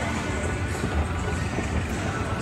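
Background music playing in a shopping mall over a steady low rumble of ambient noise.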